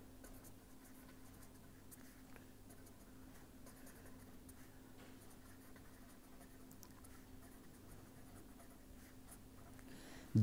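Faint scratching of a pen writing on paper, a run of many small strokes, over a low steady hum.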